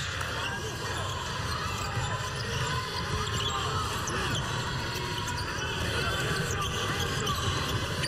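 Basketball being dribbled on a hardwood court, with the steady murmur of the arena crowd.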